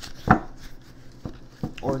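Tarot deck knocked and tapped on a table as it is handled: one sharp knock about a third of a second in, then a couple of lighter taps. A woman starts speaking near the end.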